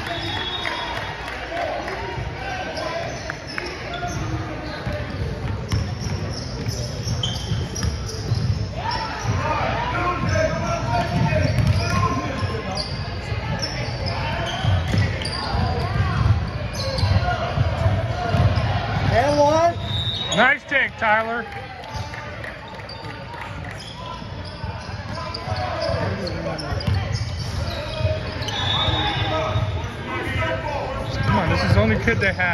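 Basketball being dribbled on a hardwood gym floor during a youth game, with players' and spectators' voices echoing in the hall.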